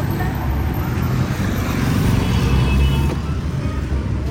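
Steady low rumble of road traffic on a busy street.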